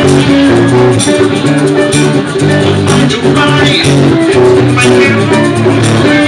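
Live acoustic band playing a song: acoustic guitars with rhythmic percussion keeping the beat.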